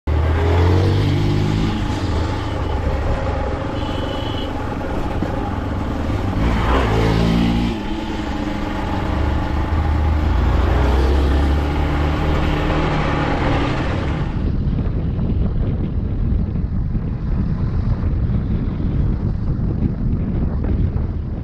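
Hero Xpulse 200 single-cylinder four-stroke engine under way, revving up through the gears near the start and again around a third of the way in, with steady running in between. From about two-thirds of the way in the sound turns duller and noisier.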